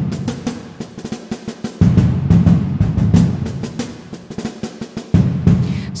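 Sampled acoustic drums from Soundiron's Drums of St. Paul library, recorded in a cathedral and played live from a keyboard. Fast snare rolls and fills run under heavy tom and kick hits, each with a long reverberant tail. Big low hits land about two seconds in and again just after five seconds.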